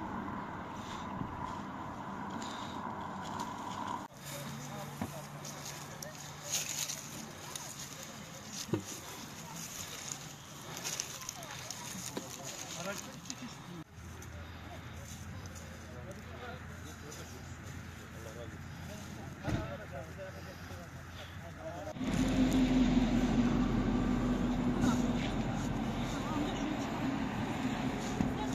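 Indistinct voices of people talking over steady road traffic and engine noise, the background changing abruptly about four, fourteen and twenty-two seconds in. The last stretch is louder, with a steady low hum.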